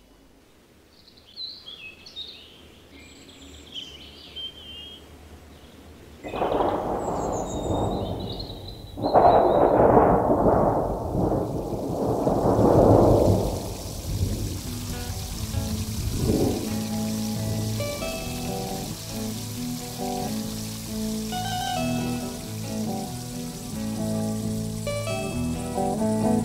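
Nature sound effects inside a progressive folk-rock track: faint chirping bird calls, then from about six seconds in loud swells of rushing noise like rain or wind. About halfway through, music comes back in with held keyboard chords and picked guitar notes.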